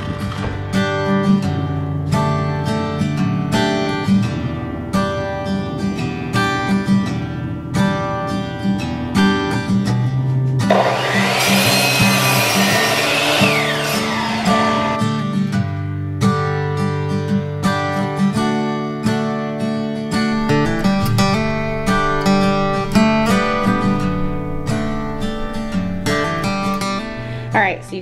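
Background music, broken about eleven seconds in by a power miter saw cutting through a tree branch for about four seconds, its whine rising and falling as the blade goes through.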